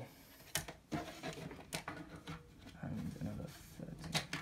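A few light knocks and rubbing sounds as a sleeved power-supply cable and a plastic ruler are handled on a wooden desk, with a low vocal murmur about three seconds in.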